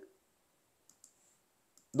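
Two faint, short clicks of a computer mouse about a second in, in an otherwise near-silent pause.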